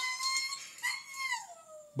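A dog howling, heard through a phone's speaker: two long high howls, the second sliding down in pitch near its end.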